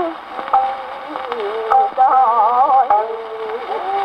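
Acoustically recorded 1920s Nitto disc of a kouta (ukiyo-bushi) playing on a Victor Victrola acoustic gramophone: a woman's voice singing in held, wavering melismatic lines, thin and cut off in the highs as an acoustic recording is. It dips softer early on and rises again about halfway, with a few sharp clicks.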